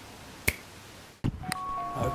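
A single sharp finger snap about half a second in, over quiet room tone. Near the end the background changes to louder outdoor noise, and steady tones begin.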